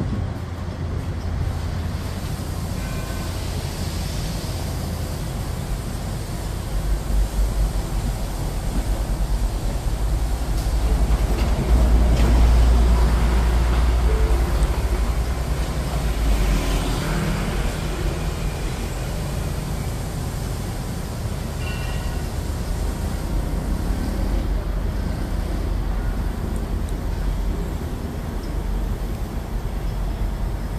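Steady low rumble of heavy machinery engines at a construction site, where a crawler crane is holding up a tall rebar cage; it swells louder partway through, then settles back.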